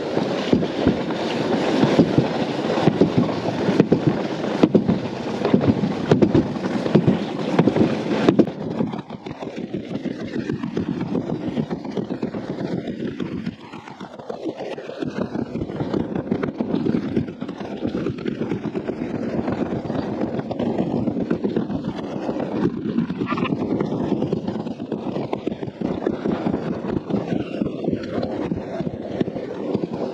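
Alpine slide sled running down its trough: a continuous rough rolling and scraping noise that dips briefly about halfway.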